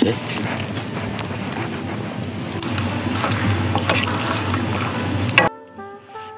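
Sweet-and-sour sauce sizzling and bubbling in a steel frying pan held over a wood fire, a steady hiss with small crackles. It stops abruptly about five and a half seconds in.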